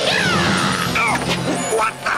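Cartoon background music with high, falling cries over it as an animated bird attacks a man's head.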